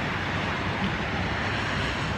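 Steady outdoor background noise of street traffic with wind on the microphone, an even roar with no distinct events.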